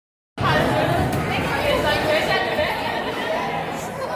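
Chatter of many overlapping voices, children's among them, in an indoor play area. It starts abruptly just after the beginning.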